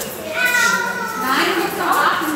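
Children's voices speaking, one high child's voice drawn out for about a second near the start.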